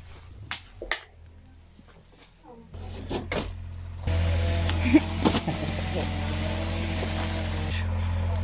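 A few sharp knocks in the first second, then a steady low engine hum sets in about three seconds in and grows louder a second later, holding steady.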